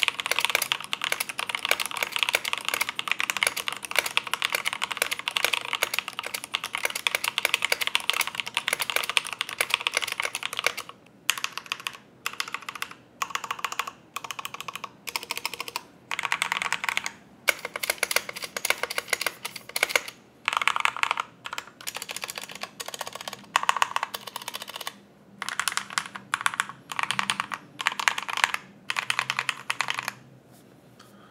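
Typing on a stock Drop CTRL High-Profile aluminium mechanical keyboard with lubed Momoka Frog linear switches and its original stabilizers, unmodded apart from the lube. For about the first eleven seconds it is fast continuous typing. After that it breaks into short runs of key presses with brief pauses between them.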